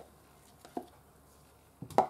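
Mostly quiet, with a couple of faint taps of a silicone spatula against a plastic jug as the last soap batter is scraped out, then a single sharp knock just before the end.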